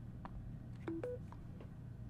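A few faint taps as a Samsung Galaxy Z Flip 4 is set down on a wireless charging pad. About a second in come two short beeps, low then higher: the chime as charging starts, a sign that it charges through its thick case.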